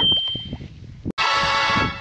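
Added editing sound effects: a short high ding near the start, then, after an abrupt cut about a second in, a bright, dense clanging ring.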